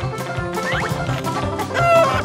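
Cartoon background music with a steady beat, with short high-pitched cries about two-thirds of a second in and a louder cry near the end.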